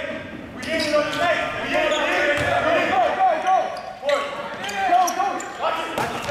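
Indistinct voices calling out in a large gym, over a basketball bouncing on the hardwood court and scattered short knocks.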